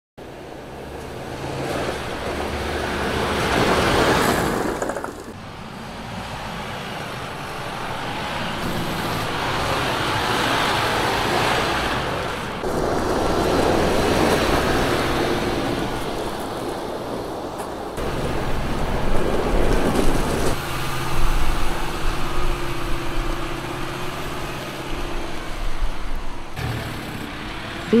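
Mercedes-Benz Unimog U 5023 truck with a 5.1-litre four-cylinder engine running under load as it drives over gravel and rock, with tyre and road noise. The sound changes abruptly every few seconds as one driving shot cuts to the next.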